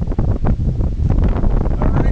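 Wind buffeting the camera microphone: a loud, steady low rumble with constant crackle.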